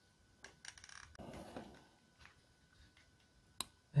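Plastic housing of a Milwaukee 3-cell power-tool battery being fitted shut: a few light clicks and a soft rub of plastic on plastic, then one sharper click near the end as the lid seats.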